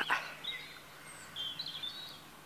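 Small birds chirping faintly, a few short high calls, mostly in the second half, over quiet outdoor background noise.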